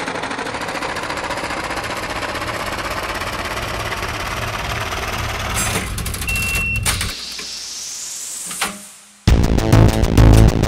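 Dense, steady noisy sound-design texture over a low hum. About six seconds in it breaks into glitchy clicks and a rising sweep, then fades, and near the end electronic music with a beat cuts in loudly.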